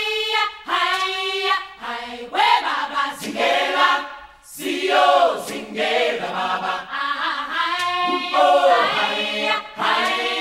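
A choir singing a chant-like song from a stage musical, in short repeated phrases, with a brief pause about four seconds in.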